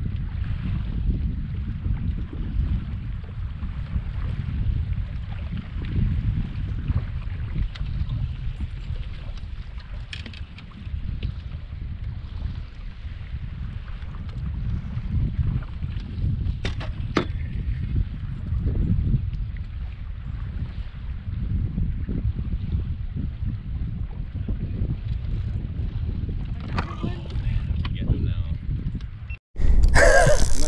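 Wind buffeting the microphone on an open fishing boat, an uneven low rumble, with a few faint clicks.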